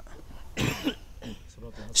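A soft, short throat-clearing cough from a man about half a second in, with a fainter low sound a moment later.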